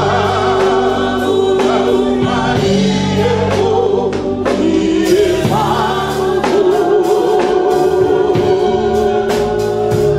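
A group of women's voices singing a gospel worship song into microphones, in long held notes with vibrato.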